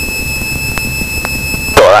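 A steady, high-pitched electronic tone with a buzzy edge in the cockpit audio feed, over the faint low drone of the Socata TB10's engine. Two faint clicks come about a second in.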